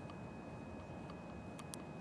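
Low steady background noise with a faint, thin, steady high tone, and a couple of soft brief ticks near the end; no distinct sound event.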